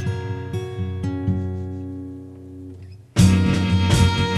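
Instrumental break in an acoustic song: guitar notes ring and fade away, with a few single plucked notes. About three seconds in, loud strummed acoustic guitar comes in suddenly.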